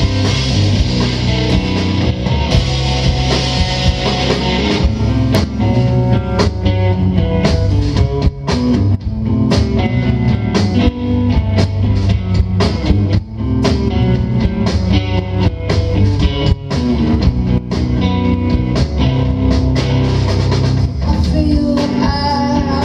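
Live indie rock band playing an instrumental passage with electric guitars, bass and drum kit, heard from the audience. A bright cymbal wash fills roughly the first five seconds, then the high end thins to separate, sharp drum hits under the guitars.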